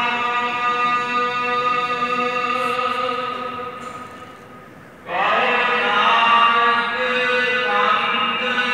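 Sikh devotional chanting of gurbani: a long held phrase with steady sustained notes that fades away about four seconds in. A new chanted phrase begins about five seconds in.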